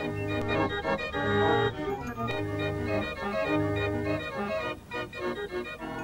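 Fairground organ playing a tune read from its folded punched-card music book: sustained organ chords over a bass that sounds in regular beats.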